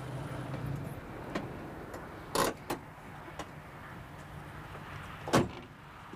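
A small car's engine runs and cuts off about a second in. A car door opens with two sharp clicks, then is slammed shut near the end.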